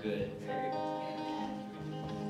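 Acoustic guitar playing, with chords held and ringing as steady notes.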